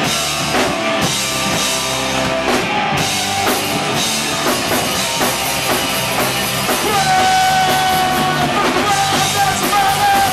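Live punk rock band playing loud: drum kit and electric guitars, with a long held note coming in about seven seconds in.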